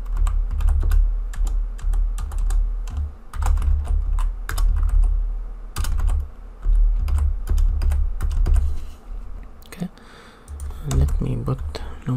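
Typing on a computer keyboard: irregular runs of key clicks, with a low rumble underneath and a short pause about ten seconds in.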